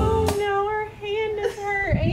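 Background music cuts off just after the start, then a woman's voice holds one long wavering note for over a second, sliding down near the end.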